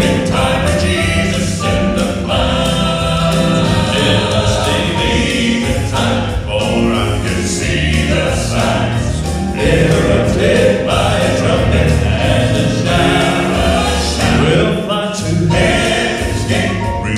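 Male gospel quartet singing in four-part harmony with live piano accompaniment.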